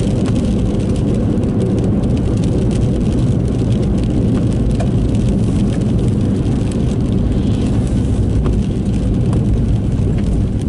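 Steady in-cabin noise of a car driving on a wet road: a continuous low rumble of engine and tyres, with a few faint ticks.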